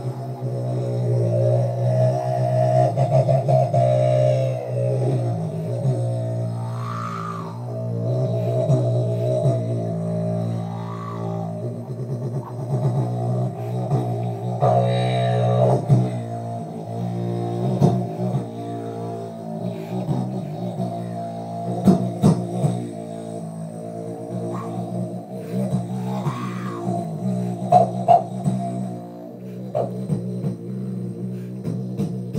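Didjboxing: a didgeridoo drone made with the voice alone, cupped hands around a handheld mic and played through a bass amp, held without a break, its tone sweeping as the mouth shape changes. Beatbox clicks and hits are woven into the drone, more of them in the second half.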